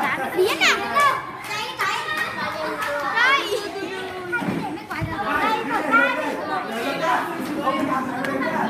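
A group of children shouting, squealing and laughing together while playing an active game, with several high rising squeals among the voices.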